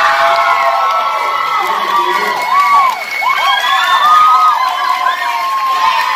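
Audience cheering and whooping, many voices calling out over one another.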